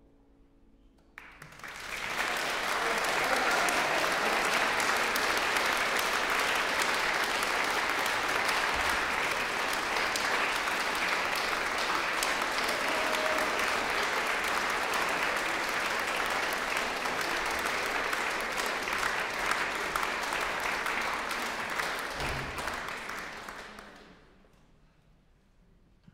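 The last piano notes fade, then audience applause breaks out about a second in, runs steady and loud, and dies away near the end.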